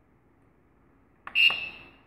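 A click and a single short, high beep from the LCD controller's piezo buzzer as its rotary knob is pressed to select a menu item, a little past halfway; the steady tone fades out over about half a second.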